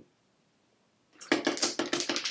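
Long metal spoon stirring ice in a tall glass: a rapid, steady run of clinks that starts just over a second in.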